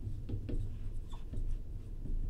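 Fluorescent marker writing on a glass lightboard: a quick series of short strokes as a word is written out.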